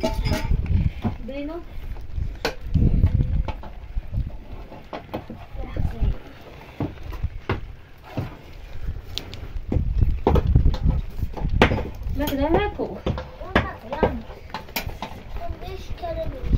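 People talking in a language the recogniser did not pick up, with scattered sharp clicks and knocks and repeated low rumbles underneath.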